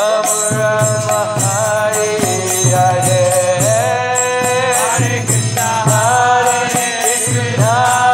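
Kirtan: a voice singing a drawn-out devotional chant in long, bending phrases over a steady rhythmic accompaniment with regular percussive strokes.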